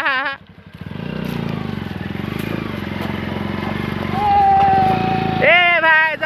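Bajaj Pulsar motorcycle's single-cylinder engine running steadily as the bike is ridden through a shallow stream, getting louder about four seconds in. A man laughs at the start and again near the end.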